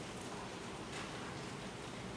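Faint steady hiss with no speech: room tone picked up by the courtroom microphones.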